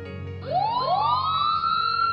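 Siren wailing over soft background music. About half a second in it winds up in pitch, with a second rising wail just behind it, and settles into a steady high note.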